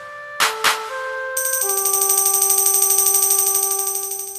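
Karaoke instrumental backing track: two percussive hits near the start and a short run of held notes, then a sustained chord with a high, fast shimmering tremolo from about a third of the way in, fading toward the end.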